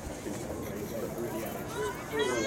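Faint chatter of distant voices across a soccer field, with a high voice starting to call out near the end.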